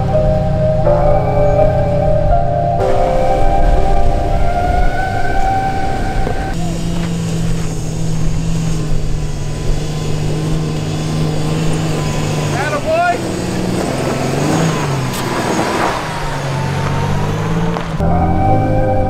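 Background music for the first several seconds, then off-road pickup truck engines running at low crawling speed over a rocky trail. Partway through there is a brief rise in pitch.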